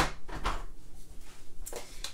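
An ink pad being fetched from a storage tray: a sharp click near the start, then a few lighter knocks and faint plastic handling noise.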